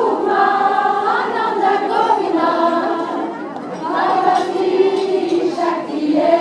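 A group of voices singing together in long held notes, like a choir, with a short lull about halfway through.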